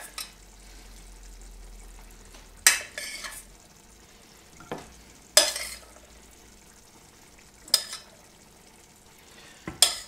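A metal fork clinking and scraping against a stainless steel saucepan as pinto beans are scooped out into the chili pot. There are sharp clinks every two to three seconds, some with a short scrape after them, and the loudest comes about halfway.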